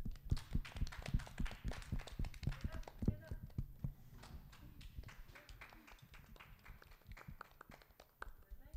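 A small group clapping by hand: a quick, irregular patter of claps that starts suddenly and thins out and grows quieter toward the end, applause at the close of a song.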